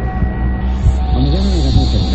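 Logo-sting sound design: a loud, deep steady drone with tones bending up and down above it, and a high shimmer that comes in about half a second in.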